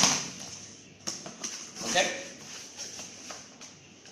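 Cardboard box being opened by hand: the top flaps lifted and folded back, giving a scatter of light cardboard scrapes and knocks.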